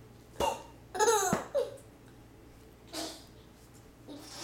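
A toddler laughing in short, high-pitched bursts: a few quick giggles in the first half, then a fainter one about three seconds in.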